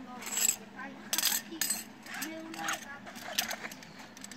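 Nylon webbing of a scuba weight belt being threaded through the slots of a lead weight, giving several short scraping and clicking handling sounds.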